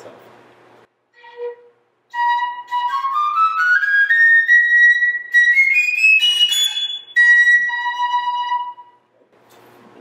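Reproduction 18th-century wooden fife played solo: after a short low note, it climbs a scale note by note up into its high register, then steps back down on two held notes near the end. The scale shows the period fife's intonation, which the player says is not in tune with itself as it goes up and down.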